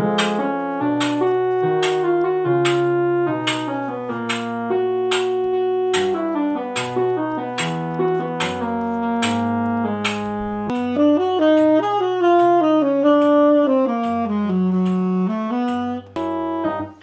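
Tenor saxophone playing a written jazz line at half speed, moving note to note in a sustained tone, over an accompaniment with a stepping bass line and a steady beat.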